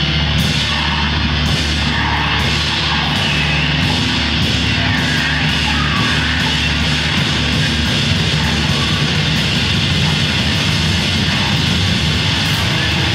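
Instrumental heavy noise-rock played live by a trio of distorted electric guitar, drum kit and noise keyboard: a loud, dense, unbroken wall of sound with a crash about once a second.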